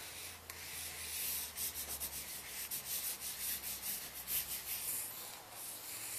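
Pitt artist pen scribbled over drawing paper, its tip rubbing across the sheet in quick, irregular strokes.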